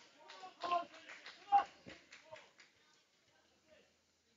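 Faint, indistinct voices for the first two seconds or so, then near silence.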